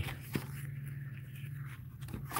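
Paper pages of a ring binder being turned by hand, with one short flick about a third of a second in, over a steady low hum.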